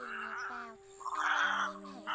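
Egrets giving harsh, croaking calls: two long calls, the second louder. Background music with sustained notes is mixed in underneath.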